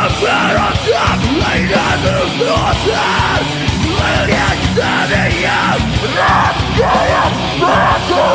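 Live rock band playing loud: electric guitars, bass and drums, with the vocalist yelling the lyrics into the microphone throughout.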